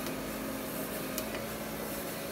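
Electric stirring pot's motor running at its top speed with a steady hum, its paddle turning in the aluminium pot.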